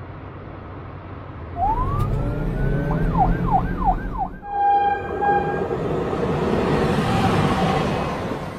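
Cartoon police car siren over a car engine rumble: about a second and a half in, a rising wail, then about four fast up-and-down sweeps. Near the middle it changes to steadier tones over a noise that swells and fades as the car passes.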